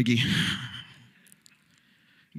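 A man's breathy exhale, like a sigh, close into a handheld microphone right after he finishes a word. It fades out about a second in, leaving near silence.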